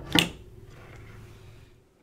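A single sharp click about a fifth of a second in, as the power plug of the Eurotherm 3504 temperature controller is disconnected to power the unit down.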